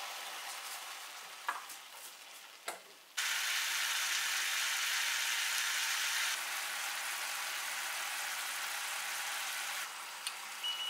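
Sugar syrup heating in a frying pan on a gas burner, giving a steady hiss. The hiss begins suddenly and loudly about three seconds in and eases slightly a few seconds later. Before that there is a fainter, fading hiss with two small clicks.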